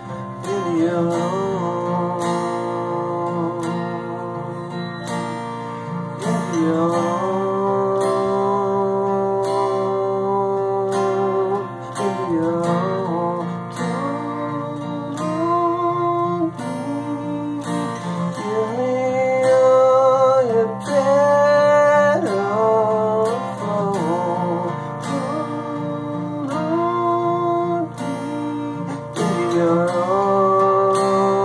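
Acoustic guitar played with a man's voice singing long held notes over it, the pitch gliding between notes.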